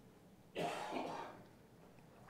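A man clears his throat with a short cough, starting about half a second in and over in under a second.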